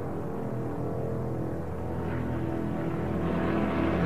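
Steady droning of propeller aircraft engines, growing gradually louder, mixed with background music.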